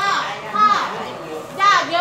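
High-pitched voices calling out in short bursts.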